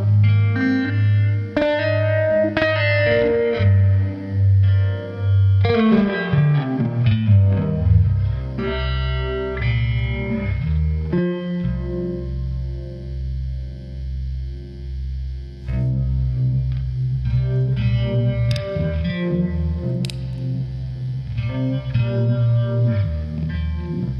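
Electric guitar downtuned to C standard, played through a Univibe-style pedal and overdrive into a 1964 Fender Vibroverb: a blues jam of picked licks and low held notes, the held notes pulsing slowly in the middle.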